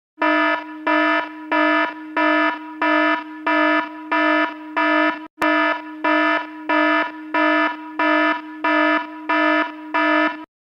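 Electronic alarm sounding a low, buzzy beep over and over, about three beeps every two seconds, each beep dropping in level before it cuts off. A click and a brief break interrupt it about halfway through.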